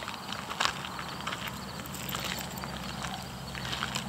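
Footsteps on a gravel path, a run of irregular short scuffs and crunches as a person walks a puppy on a leash, with a low steady hum underneath.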